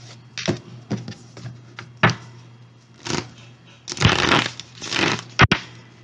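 A deck of affirmation cards being shuffled by hand: irregular bursts of rustling and flicking about once a second, the strongest about two, four and five seconds in, over a faint steady low hum.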